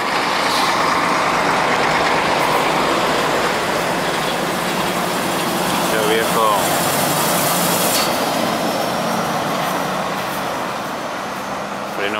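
Mercedes-Benz Actros semi-truck hauling a loaded flatbed trailer, its diesel engine working steadily as it passes close by, loud at first and fading as it pulls away up the grade.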